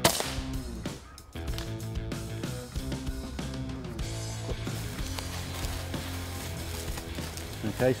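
Background music plays throughout. Right at the start a single sharp shot from an Air Arms Galahad FAC .22 pre-charged air rifle cracks through it, the loudest sound here.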